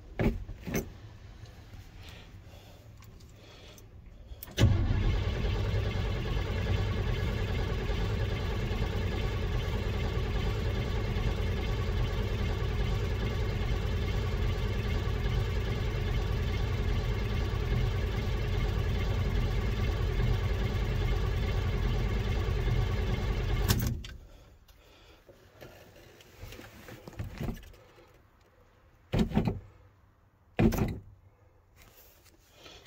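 Starter cranking a 1978 Chevrolet truck's 350 small-block V8 on a cold start after months of sitting. It begins suddenly about five seconds in, runs steadily for about 19 seconds without the engine catching, then stops abruptly.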